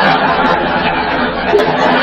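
Many people talking at once: the steady hubbub of an audience chattering in a hall.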